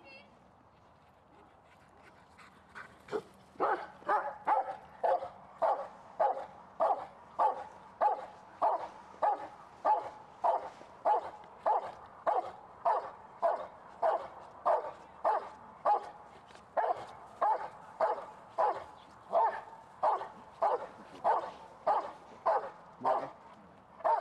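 A dog barking steadily and rhythmically at a helper standing in a training blind, about two sharp barks a second, starting about three seconds in. This is the bark-and-hold, in which the dog keeps the helper in place by barking without biting.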